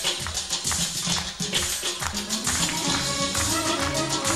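Live instrumental music: a plucked tar playing a melody over regular percussion strikes from a frame drum.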